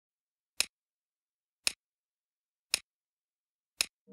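A ticking sound effect: four crisp clicks evenly spaced about a second apart, with dead silence between them.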